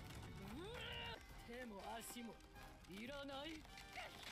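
Faint episode audio low in the mix: a voice rising and falling in three short phrases over quiet music.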